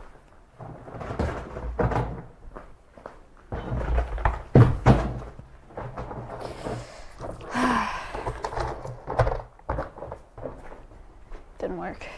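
Handling noise: footsteps and a series of irregular thuds and knocks as tools and objects are picked up and moved. The loudest knocks come about four to five seconds in, and a stretch of rustling follows a little later.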